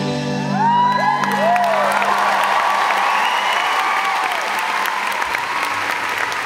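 The song's last chord rings out and fades over the first second or so. A large audience bursts into applause with whistles and cheers, and the clapping carries on steadily.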